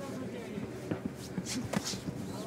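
MMA cage sound during a live bout: indistinct voices from the corners and crowd, with the fighters' bare feet shuffling on the canvas and a few sharp slaps or clicks in the second half.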